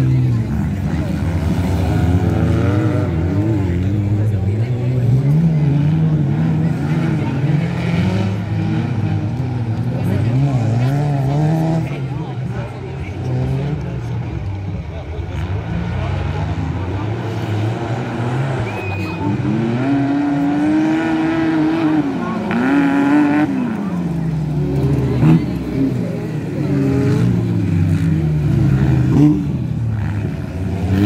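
Off-road racing buggy engines revving hard and backing off again and again as the buggies accelerate down the dirt track and slow for its corners. The pitch keeps climbing and dropping throughout.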